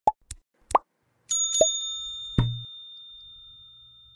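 Logo-animation sound effects: several quick, upward-sweeping pops, then a bell-like ding about a second and a half in that rings on and slowly fades. A low thump comes about a second after the ding.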